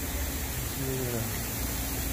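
A short murmur of a person's voice about a second in, over a steady background hiss.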